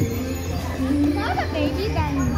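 Children's voices and play noise, with a child's high squeal about a second in.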